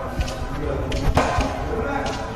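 Brick-making machinery with a clay conveyor belt running as a rough low rumble. A few sharp knocks come through it, the loudest a little after a second in.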